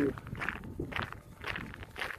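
Footsteps of a person walking at an ordinary pace, a few steps a second.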